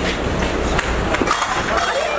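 A jostling crowd: indistinct voices with a clatter of knocks and bumps scattered through.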